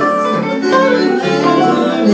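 A live band playing on acoustic and electric guitars, an instrumental passage of a song.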